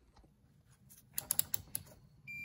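Rotary selector dial of a Fluke digital multimeter clicking through its detents: a quick run of several sharp clicks in the second half, as it is turned from off to the resistance/continuity setting.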